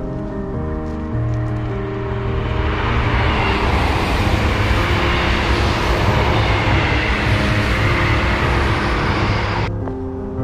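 A passenger train passing, its running noise building over several seconds, with a faint falling whine, then cutting off suddenly near the end. Background music plays throughout.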